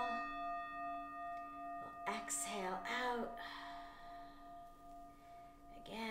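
A meditation bell struck once, ringing with a long, slowly fading tone of several pitches at once; the higher overtones die away after about two seconds while the lower tones carry on.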